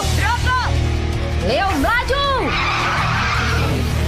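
Cartoon racing kart engines running in a steady low hum at the start line. Several high cries glide up and down over it, and a rush of hissing noise comes about three seconds in.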